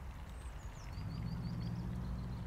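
Quiet outdoor background: a faint bird call of a few quick high chirps, and a low steady hum that comes in about a second in.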